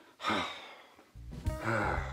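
A short breathy sigh, falling in pitch, then background music from about a second in.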